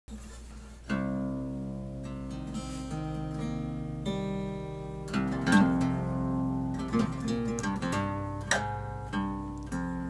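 Acoustic guitar music, chords plucked and strummed in a steady run of notes, starting about a second in.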